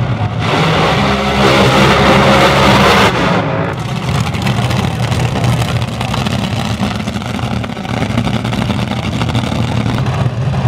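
Two nostalgia front-engine Top Fuel dragsters launch side by side, their supercharged nitromethane-burning V8s at full throttle for about three seconds. The sound then drops to a lower, steadier engine rumble as the cars get farther away.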